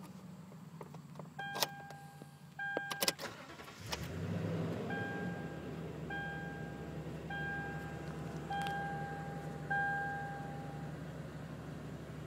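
Keys clicking in the ignition of a 2010 Toyota Tundra, then the engine cranks and starts about four seconds in and settles into a steady idle. A dashboard chime sounds twice before the start, then five more times at about one-second intervals while the engine idles.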